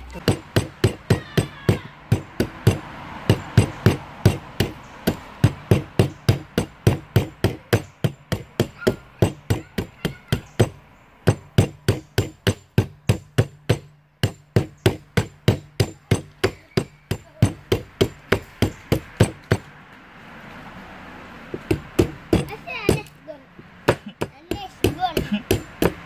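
Machete blade chopping and shaving a small block of wood held against a log, a quick steady run of strikes about three a second, thinning out briefly about twenty seconds in before picking up again.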